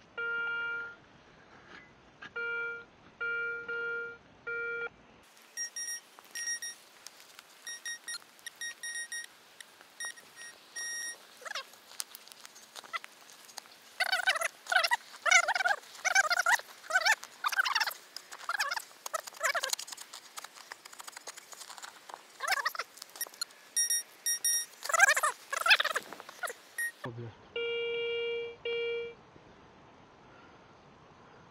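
Metal detector, a Garrett Euro ACE, beeping as it is swept over a dug hole: a run of low-pitched tones in the first five seconds, then shorter, higher beeps, a signal mixed with iron. From about 14 to 27 s a shovel scrapes and cuts through soil and turf, and low tones sound again near the end as a clump of soil is passed over the coil.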